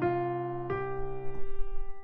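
Software piano playback from a notation program playing notes of a C minor scale one at a time: a note sounds at the start, another about two-thirds of a second in, each dying away.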